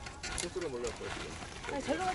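Faint voices of people talking in the background over quiet outdoor ambience.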